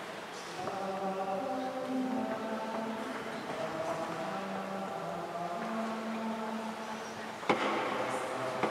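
Mixed choir of men and women singing slow, long-held notes in several parts. A sharp knock sounds near the end.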